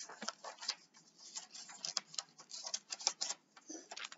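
Scissors cutting through a paper worksheet: a quick run of short, irregular snips and crisp paper clicks.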